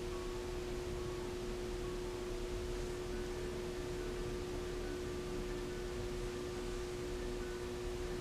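A steady, unchanging mid-pitched electrical hum, one tone with a fainter higher one, over a constant low hiss.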